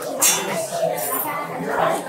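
Restaurant dining-room background of people chattering, with a short sharp sound a moment in.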